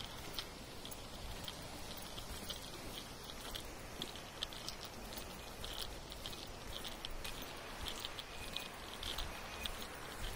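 Steady rushing of the Alaknanda river running high and muddy, swollen by heavy rain. Faint short high chirps are scattered over it, more often in the second half.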